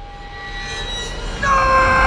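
A rumbling swell of noise builds, and about a second and a half in a man's loud, held scream cuts in on one high pitch.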